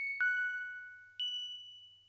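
Opening of a song: three struck, bell-like notes, the first two almost together at the start and a higher one about a second later, each ringing on and slowly fading.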